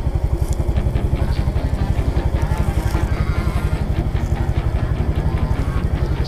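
Small motorcycle engine running steadily with a quick, even pulsing beat.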